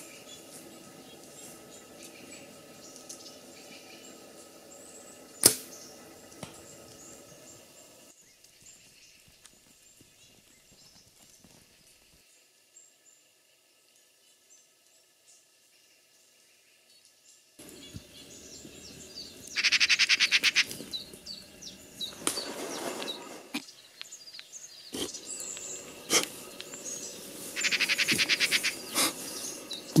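Black-billed magpies chattering in harsh, rapid rattles: two loud bursts, about twenty and twenty-eight seconds in, after a long near-silent stretch. A single sharp click sounds about five seconds in.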